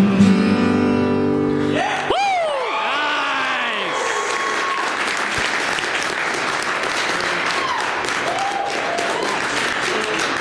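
An acoustic guitar chord strummed and left ringing for about two seconds to end the song, then a small audience breaks into whoops and applause that runs on to the end.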